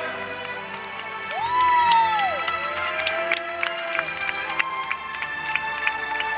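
Live concert music from a stage heard from far back in an open-air audience: sustained tones, with a tone that glides up and back down about a second and a half in, and quick percussive clicks after it, with some cheering from the crowd.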